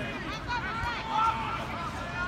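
Indistinct voices talking, not close to the microphone, over a steady low background noise.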